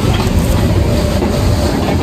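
Matterhorn Bobsleds coaster sled rolling on its tubular steel track: a steady low rumble with irregular clatter from the wheels.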